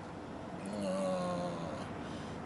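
A man's closed-mouth hum, one level 'mmm' of about a second, over the steady hush of road noise inside a moving car.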